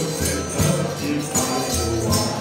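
Live forró-style music: a piano accordion playing held chords and melody over a zabumba-style bass drum thumping a regular beat, with jingling high percussion on top.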